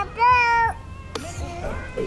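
A high-pitched, wordless call held for about half a second shortly after the start, over background music.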